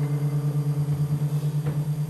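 A sustained low drone from improvised live music, holding one pitch with a few overtones and pulsing quickly and evenly.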